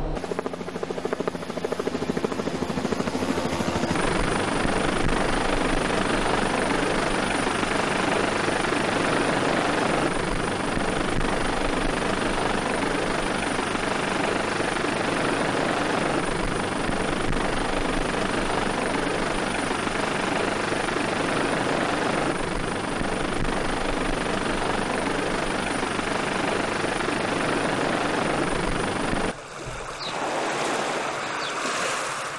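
Helicopter in flight, its rotor and engine making a loud, steady noise that fills out about four seconds in and cuts off sharply near the end.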